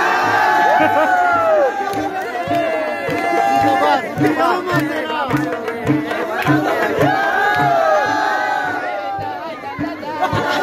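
Men's voices singing and shouting along with long swooping cries over a steady drum beat of about two strokes a second, the lively sound of a Khowar folk song with a crowd joining in.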